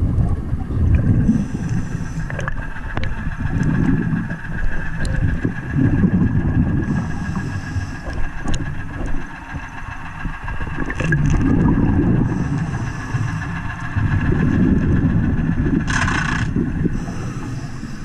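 Underwater sound of a diver hand-pulling milfoil: surges of rumbling bubble and water noise every few seconds, alternating with shorter bursts of hiss, over a steady high-pitched hum. A short sharp hiss comes near the end.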